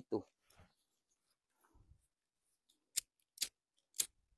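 A voice trails off at the start, then three short sharp clicks come about half a second apart near the end.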